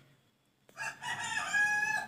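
One long, high-pitched animal call, starting a little under a second in and lasting about a second and a half.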